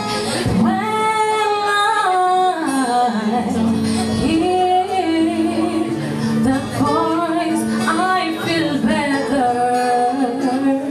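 A woman singing live into a microphone, holding long notes and gliding between them, accompanied by an electric guitar.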